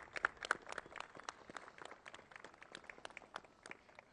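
Light applause from a small group of people clapping by hand: scattered claps, several a second at first, thinning out over the last second or so.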